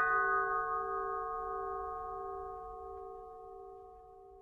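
A bell-like chime, struck twice just before, rings out as several steady tones and fades away slowly.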